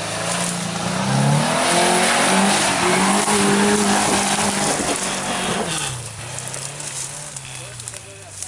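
A first-generation Subaru Forester's flat-four engine revving hard while its wheels spin in deep mud, the revs climbing and held high for about five seconds, then dropping back to a low idle about six seconds in.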